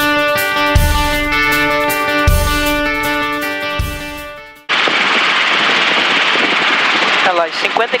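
Intro music with held notes and a low beat about every second and a half fades out just past halfway. It then cuts suddenly to the steady drone of a light helicopter's engine and rotor inside the cabin in flight, with voices coming in near the end.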